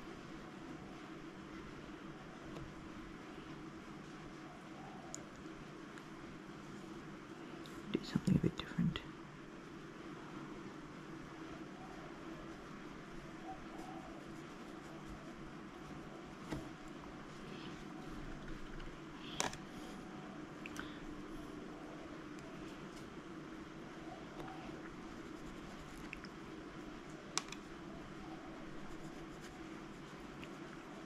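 Quiet painting noises over a steady low room hum: a brush picking up gouache from a plastic palette and working on paper, with a short cluster of knocks about eight seconds in and a couple of single clicks later.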